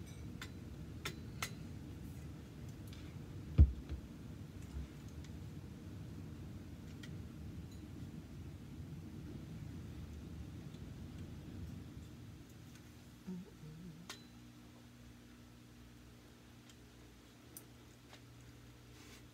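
Scattered light clicks and taps of aluminum gun parts being handled and fitted by hand, with one loud knock about three and a half seconds in.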